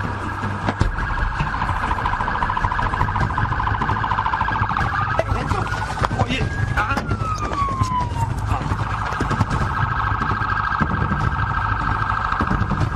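Police car siren sounding a rapid warble; about halfway through it sweeps slowly up in pitch and back down once, then the fast warble resumes.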